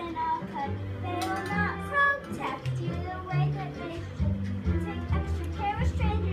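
A girl singing a show tune over an instrumental accompaniment, with bass notes held under the sung melody.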